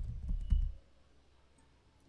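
Keystrokes on a computer keyboard: a few quick key clicks in the first second, then the typing stops.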